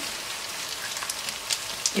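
Hot oil sizzling steadily in a pan of frying onion masala, with scattered light crackles.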